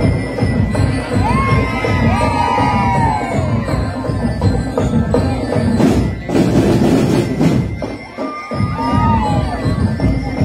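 Marching band drums and percussion playing in a street parade. A crowd shouts and cheers over it about a second in and again near the end, with a loud burst of noise around six seconds in.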